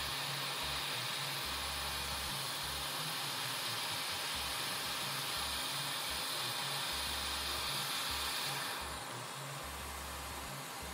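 Hot air rework station blowing a steady hiss of hot air at full heat, reflowing the solder under a replacement MOSFET chip on a laptop motherboard. The airflow stops shortly before the end.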